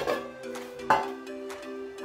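Background music with steady held notes, and a single sharp clank about a second in as a metal loaf pan is set down on a stone countertop.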